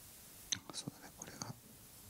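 Soft, near-whispered speech lasting about a second, starting about half a second in, with a few faint clicks.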